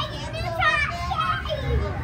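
Young children's excited, high-pitched voices and chatter, over a steady low background rumble.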